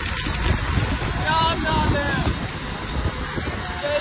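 Road traffic and wind rumble on the microphone from moving vehicles, with men's voices shouting between about one and two and a half seconds in.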